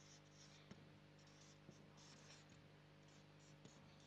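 Faint marker pen strokes on flip-chart paper: short, irregular squeaky scratches as letters are written, with a couple of faint ticks, over a low steady hum.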